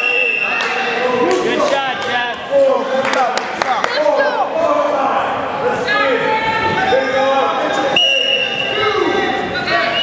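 Spectators and coaches calling out in an echoing school gym during a wrestling bout. About eight seconds in there is a steady, high, one-second whistle blast, typical of the referee starting the bout.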